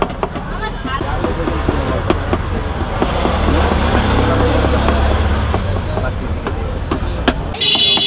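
Kitchen knife tapping against a plastic cutting board as cucumber is sliced, in quick repeated clicks, over the low rumble of street traffic that swells as a vehicle passes in the middle. Near the end the sound changes abruptly and a steady high tone starts.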